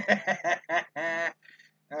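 A man laughing: a quick run of chuckles that dies away about halfway through.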